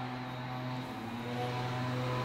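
A steady low hum with faint, soft background music of held notes that shift in pitch.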